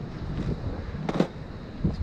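Wind buffeting the camera microphone, a low, uneven rumble, with one short sharp sound about a second in.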